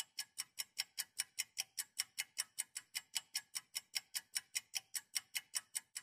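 Quiet, steady ticking at about five ticks a second, an even percussive pulse like a hi-hat or click at the start of a song, before the band comes in.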